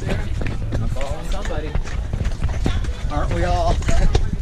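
Voices of several people talking in the background over footsteps and hard clacking on brick paving and tiled stone steps, with a steady low rumble underneath.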